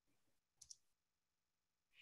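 Near silence, with a faint double click a little over half a second in.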